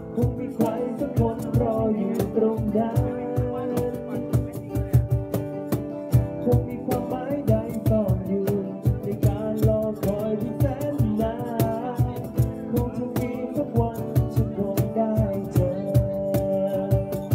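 Live acoustic music: a man singing while strumming an acoustic guitar, over a steady percussive beat.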